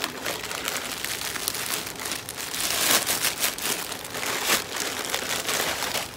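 Plastic packaging crinkling and rustling as it is pulled open by hand, with a series of short crackles.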